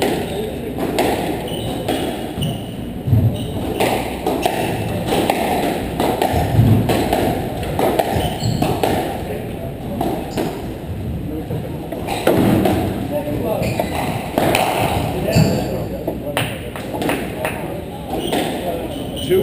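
Squash ball being struck by rackets and hitting the court walls: repeated sharp hits and thuds, with indistinct voices in the background.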